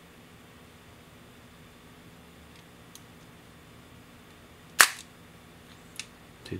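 Ihagee Exakta VxIIb's cloth focal-plane shutter firing once with a single sharp click near the end, at its fastest speed of 1/1000 s. A couple of faint ticks come a few seconds earlier.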